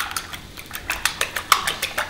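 A fork beating eggs in a ceramic bowl: a quick, uneven run of clicks as the tines strike the side of the bowl.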